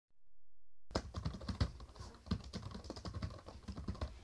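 Typing on a keyboard: quick, irregular key clicks that start about a second in.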